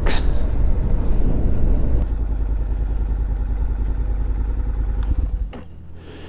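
Honda NC750X parallel-twin engine running at low speed with wind rumble on the bike-mounted microphone as the motorcycle rolls in to park. About five and a half seconds in the wind noise drops away suddenly as the bike stops, leaving the engine idling quietly.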